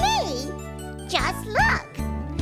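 Children's song: a high, childlike character voice sings two sliding notes over backing music. The first comes at the start and the second a little past halfway.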